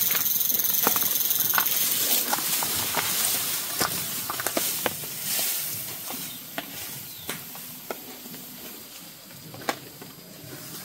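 A bundle of dry thatching grass rustling and hissing as a person carries it on their back, with footsteps and snapping twigs on dry leaf litter. The rustle is loudest at first and fades as the carrier moves away.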